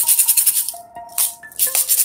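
A pair of LP maracas shaken rapidly in quick runs of rattling strokes, pausing briefly about half a second in and again about a second and a half in.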